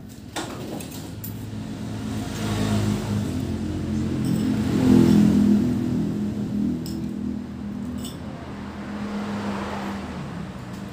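A motor vehicle's engine passing by, growing louder to a peak about halfway through and then slowly fading. A few light clinks of a spoon and fork against a plate sound over it.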